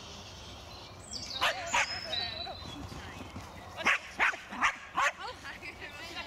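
Dog barking during an agility run: two barks about a second and a half in, then four sharp barks in quick succession near the end.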